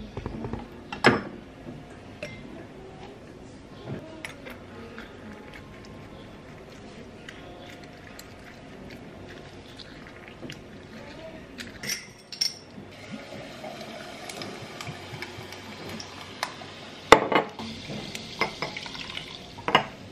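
Kitchen handling sounds as a lemon is cut on a wooden cutting board and squeezed over a cut-glass bowl: scattered sharp knocks and clinks of knife, glass and board, the loudest about a second in and again around seventeen seconds.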